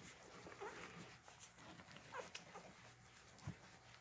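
Newborn golden retriever puppies squeaking and whimpering faintly while nursing, a few short high squeaks scattered through, with a soft low thump near the end.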